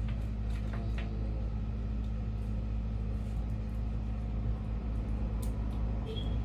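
A steady low hum fills the room, with a few faint clicks and rustles of things being handled, about a second in and again near the end.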